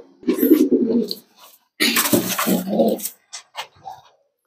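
Domestic racing pigeons cooing: two low coos, the second a little longer, each about a second, followed by a few faint clicks near the end.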